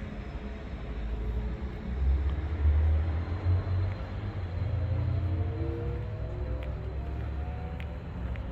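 Passing car traffic: a low rumble that swells a couple of seconds in. An engine note then rises slowly in pitch through the second half as a vehicle accelerates.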